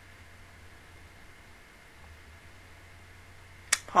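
Quiet room tone with a faint steady hum; near the end a single sharp click, just before a woman's voice breaks in.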